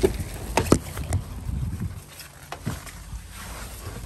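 Car door being opened and someone climbing into the seat: a handful of sharp clicks and knocks from the handle, latch and door, with low wind rumble on the microphone that dies away about halfway through.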